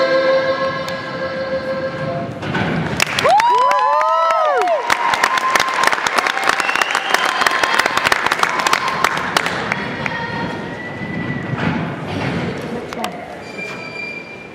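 The routine's violin music ends on a held note, then an audience applauds and cheers, with high cheers rising and falling in pitch a few seconds in; the applause thins out and fades toward the end.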